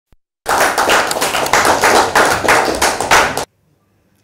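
Audience applauding, a dense patter of many hands clapping. It starts about half a second in and cuts off abruptly near the end.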